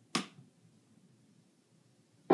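A single short snap-like click just after the start, dying away quickly, then near silence in a small room.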